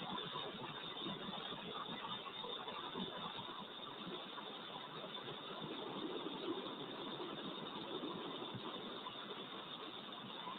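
Steady hiss of an open space-to-ground radio loop between transmissions.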